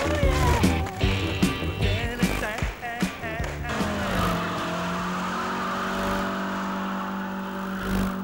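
Soundtrack music with sharp skateboard clicks and pops, then from about four seconds in a car engine held at steady high revs while its spinning tyres screech: a burnout throwing off tyre smoke.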